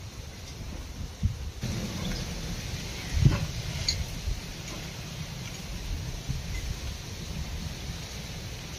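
Hands crumbling clods and pressing loose soil around a transplanted chili seedling: soft scuffs with dull thumps about a second and about three seconds in, over a low steady rumble.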